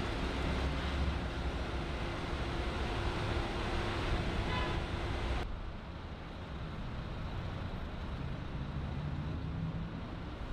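Street traffic ambience: a steady rumble of road traffic with a constant low hum, which drops abruptly to a quieter traffic background about halfway through.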